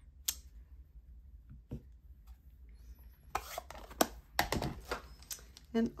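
Clicks, taps and rustles of clear acrylic stamp block and plastic stamp case being handled on a tabletop: one sharp click just after the start, then a busy run of clicks and rustles about three to five seconds in.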